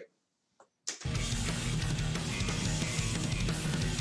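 Hard rock song resuming abruptly about a second in after a brief silence: bass guitar played up front over drums and electric guitar, as in a bass solo.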